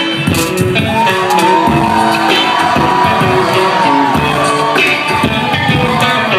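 Beatboxing through a concert PA: low vocal kick-drum hits under a long held vocal tone that slides up near the start and holds for a couple of seconds.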